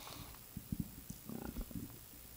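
A quiet pause with a few faint low knocks and a soft low rumble, typical of handling noise on a handheld microphone.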